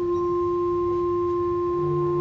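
Church organ sounding one steady held note that starts suddenly, with a lower bass note joining near the end.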